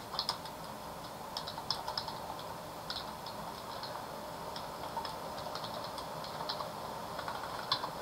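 Computer keyboard typing: a run of light, irregular key clicks.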